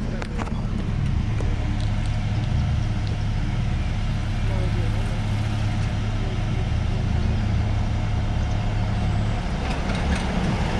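White cargo van's engine running with a steady low hum as it tows a loaded utility trailer away down the street.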